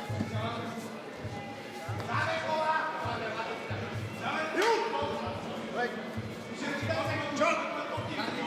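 Shouting voices in a fight arena, with a single yell about halfway through, over a run of low, dull thuds.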